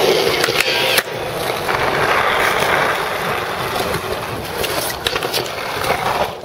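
Skateboard wheels rolling over concrete, a steady rolling noise, with a sharp clack about a second in and a few lighter clicks near the end.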